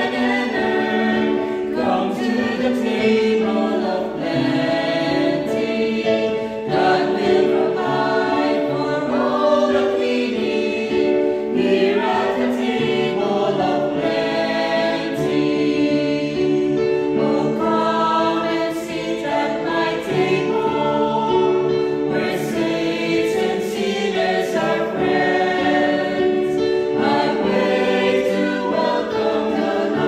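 Church choir of men and women singing a hymn together in sustained, steady phrases.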